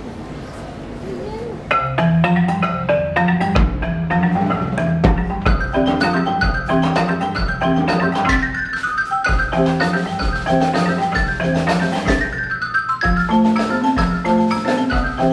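Mallet percussion ensemble of marimbas and xylophones starting to play about two seconds in: dense, quick pitched notes over a low, unevenly spaced pulse. It is an improvisation in the Bulgarian 7/8 rhythm.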